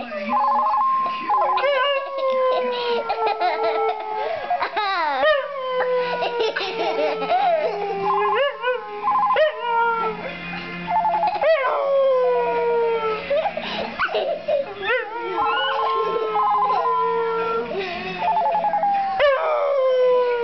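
A dog howling along with a phone ringtone melody: long howls that slide slowly down in pitch, one after another, while short bursts of the ringtone tune recur between and under them.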